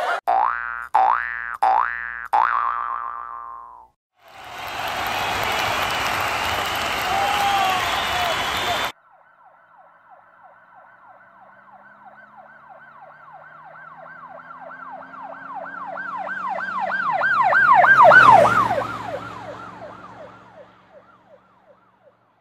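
An emergency vehicle's rapidly warbling siren passing by: it swells over several seconds, peaks and drops in pitch about two-thirds of the way through, then fades away. Before it come four short sounds each sliding in pitch, then about five seconds of a dense noisy rush that stops abruptly.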